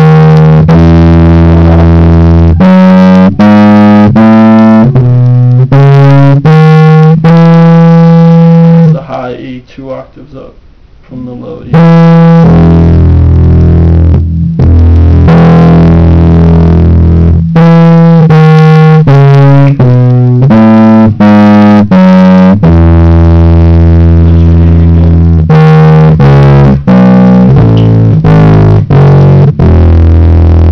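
Electric bass guitar with a distorted tone playing single notes one after another, running through an E major scale over two octaves. Playing drops off briefly about nine seconds in, then carries on.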